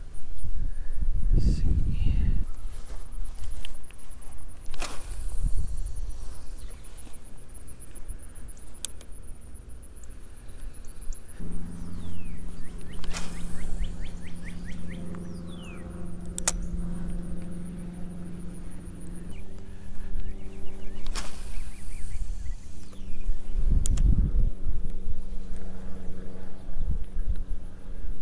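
Spinning rod and reel being cast and retrieved: sharp clicks and quick swishes several times, with gusts of wind on the microphone. A steady low hum sets in about a third of the way through and holds to the end.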